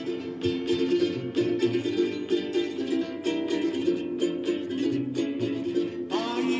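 Hawaiian hula music: an instrumental introduction of steadily strummed ukulele chords, about three strums a second, with no singing yet.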